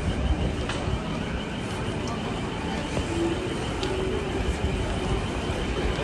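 Busy city street ambience: a steady rumble of traffic with the indistinct voices of passers-by.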